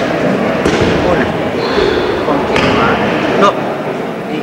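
Echoing din of a busy gym hall: overlapping background voices, with three short dull thuds about a second apart.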